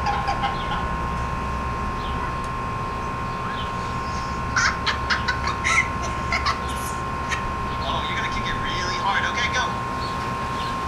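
Short bursts of voices and sharp sounds from a compilation clip, clustered about halfway through and again near the end, over a steady high hum.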